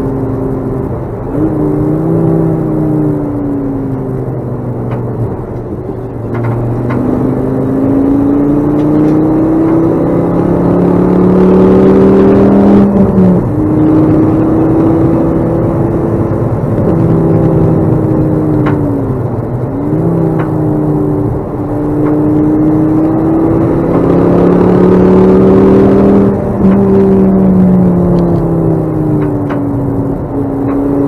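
Ford Focus ST track car's engine heard from inside the cabin on track. Its note climbs steadily under acceleration and is loudest at the top of each pull. It drops sharply twice, about 13 seconds in and again near 27 seconds, and falls away in between as the car slows.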